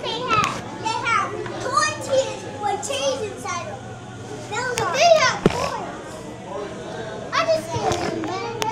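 Young children talking and chattering excitedly close to the microphone, over a faint steady low hum.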